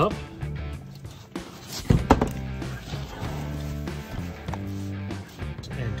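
Background guitar music, with a couple of sharp thunks about two seconds in as a laptop is flipped over and set down on a desk.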